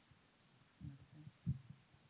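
Handling noise from a handheld microphone as it is passed over and gripped: a few faint, muffled low thumps about a second in, the sharpest just after halfway.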